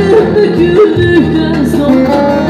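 Live music: a woman singing a Turkish folk song into a microphone over amplified instrumental accompaniment, her voice bending through ornamented, wavering notes without clear words.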